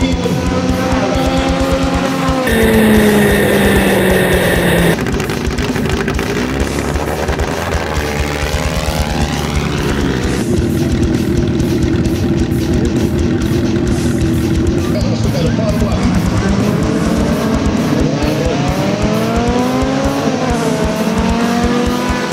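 Dirt-track racing cars' engines revving up and down and cars passing at speed, with background music. The sound changes abruptly at several edits.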